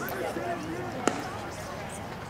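Faint voices of people talking at a ball field, with one sharp knock about a second in that rings briefly.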